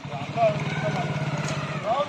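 A motor vehicle engine running with a steady low hum that stops near the end, under scattered voices of people nearby.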